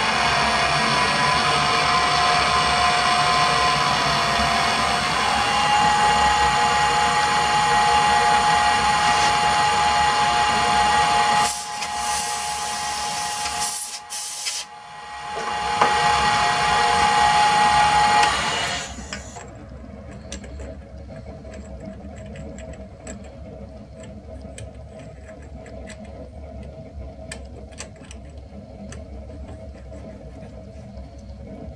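Metal lathe running under power on a thread-cutting pass (M40x1.5), a steady whine with several tones. It changes briefly about midway, then the machine stops a little past halfway, leaving faint light clicks.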